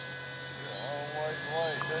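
A steady, quiet electrical buzz made of several fixed tones, with a faint voice partway through.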